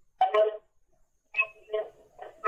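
Two short bursts of untranscribed speech, a caller's voice coming in over the phone line.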